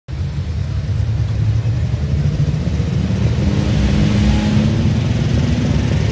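Superstock pulling tractor's diesel engine running hard at the start of a pull, getting steadily louder and rising slightly in pitch as it builds revs.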